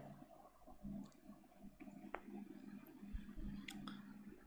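Very quiet room tone with a faint low hum and a few brief, faint clicks, one about two seconds in and two more near the end.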